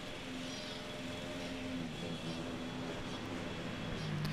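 Bald-faced hornets buzzing at the nest, a steady low hum of many wings with several faint pitches that waver and overlap.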